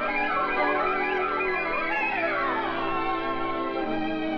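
Band music: the instrumental introduction to a song, sustained chords over a steady bass line, with a run of falling notes about halfway through.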